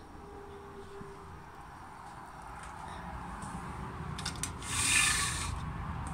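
Handling noise from a phone being carried by hand while walking, a low uneven rumble. About five seconds in there is a louder rushing swish lasting under a second.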